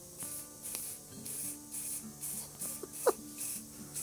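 Short, soft hissing squirts, about two a second, from an aerosol spray paint can repressurised with compressor air and now spraying again, over quiet background music with held notes.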